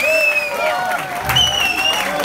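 Concert audience applauding and cheering, with two long high-pitched calls ringing out above the clapping.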